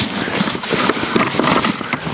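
A hand rubbing fine black fishing soil through a fine-mesh sieve over a bucket: a steady gritty scraping with irregular strokes as lumps are pushed through the mesh.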